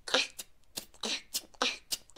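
Beatboxer performing the water technique: a steady run of mouth-made drum sounds (kick, hi-hat and inward snare) at about three or four hits a second, some hits carrying a short pitched, watery tone.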